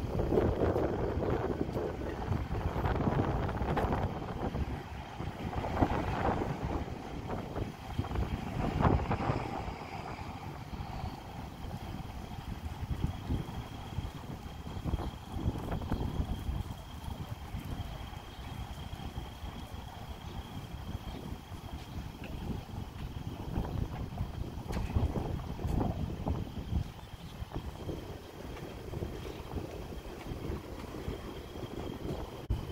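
Wind buffeting the microphone: an uneven, gusting low rumble, strongest in the first ten seconds. A faint, steady high-pitched whine comes in about halfway through.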